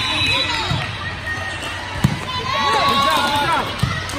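A volleyball struck twice during a rally, two sharp slaps about two seconds apart, over the shouts and calls of young players and spectators that grow louder in the second half.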